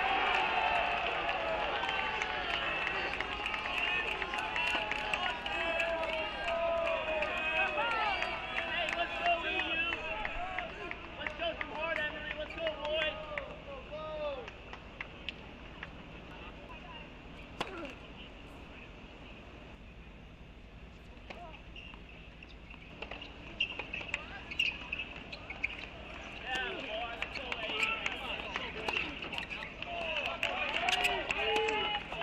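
Tennis court sound with background voices talking, broken by sharp knocks of a tennis ball being bounced and struck by rackets. It is quieter through the middle stretch.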